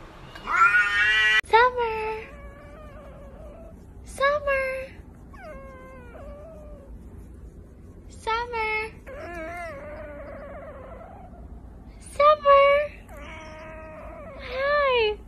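Domestic cats meowing and yowling in a string of about eight drawn-out calls that bend up and down in pitch, with short pauses between them; the first call, rising sharply near the start, is among the loudest.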